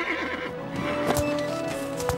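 Cartoon horse sound effects over background music: a whinny fading out at the start as the horse rears, then a few hoofbeats as it gallops off.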